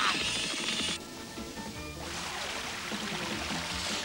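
Cartoon sound effects over background music: a rushing noise that cuts off about a second in, then from about two seconds in the steady rushing spray of a cartoon geyser erupting.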